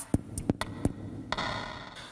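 A handful of sharp, irregularly spaced clicks or taps over faint hiss.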